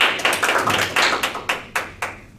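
A small group of people applauding, dense clapping that thins to a few last claps near the end.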